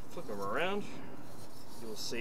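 Foam board pieces rubbing and sliding across a plastic cutting mat as they are pushed into place, with a short voiced sound rising in pitch about half a second in.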